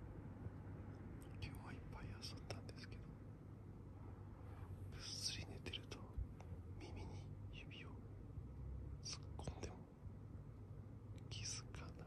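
A person whispering softly in short breathy phrases, with a low steady hum underneath.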